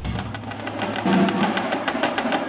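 A drumline playing Yamaha marching snare drums: a fast, dense run of sticking strokes.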